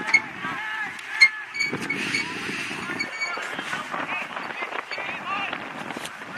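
Distant, unintelligible shouts and calls from players across an open soccer pitch, with two sharp knocks in the first second or so.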